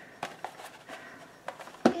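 Light handling noise as a paper-covered mini album is moved and set down on a stone countertop: a few faint, short taps and rubs.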